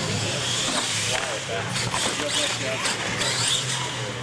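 Radio-controlled monster truck driving on a concrete floor: electric motor whining up and down with the throttle and tyres scrubbing, with voices in the background.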